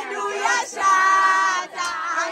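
High women's voices singing, with wavering pitch and one high note held for most of a second near the middle.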